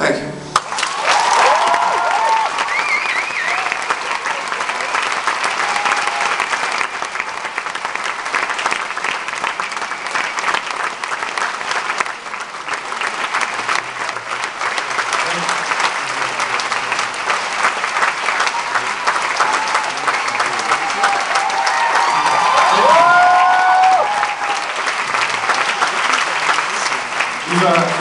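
Audience applauding after a live song ends, steady dense clapping, with cheering shouts about a second in and again later on.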